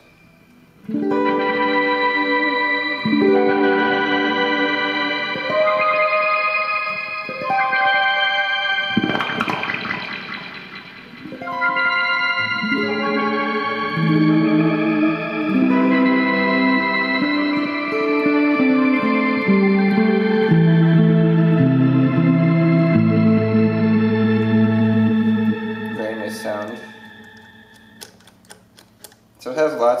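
Electric guitar played through a Strymon Timeline delay pedal on a shimmering, crystals-type delay sound: ringing sustained notes and chords with repeats over them. There is a strummed chord about nine seconds in, then a slow line stepping down in pitch, and the sound fades out near the end.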